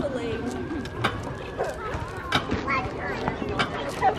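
Children's voices and calls at a playground, with a few short sharp knocks.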